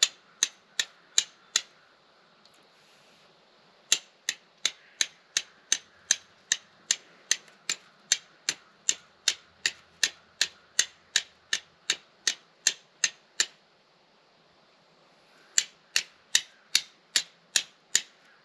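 A steel striker struck again and again against a piece of flint, throwing sparks onto char cloth held on the flint. The strikes come as sharp clicks, about three a second, in three runs broken by short pauses about two seconds in and about fourteen seconds in.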